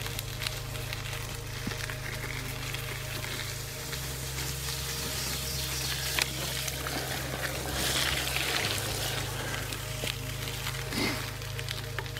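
Background music with long held low notes that change twice, over a steady crackling hiss of bicycle tyres rolling on a wet dirt fire road. The hiss swells briefly around eight seconds in.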